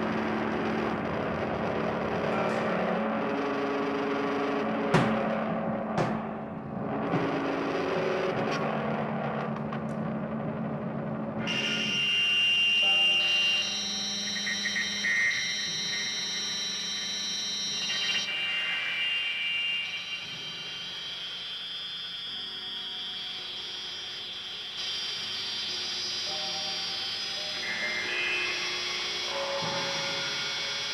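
Live jazz-fusion band playing a loose, free-form passage, with a couple of sharp percussion hits about five and six seconds in. From about eleven seconds in the sound turns brighter, filled with held, sustained tones.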